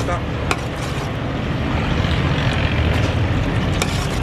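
Metal ladle stirring thick masala in a large aluminium pot as it is fried down, with a sharp clink against the pot about half a second in and another near the end, over a steady low rumble.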